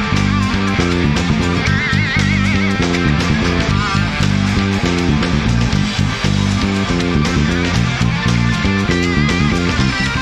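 Electric bass guitar played fingerstyle, a driving rhythmic line over a full rock band recording with drums. A lead electric guitar plays notes with wide vibrato about two seconds in and again near the end.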